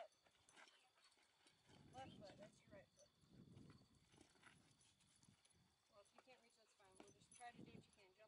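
Near silence with faint, indistinct voices in snatches and a few low, muffled rumbles.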